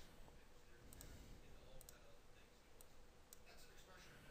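Near silence: faint room tone with a handful of soft computer-mouse clicks spread through it.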